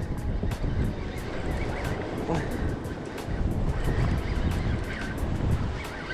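Spinning reel being cranked steadily, ticking about five times a second, over wind buffeting the microphone.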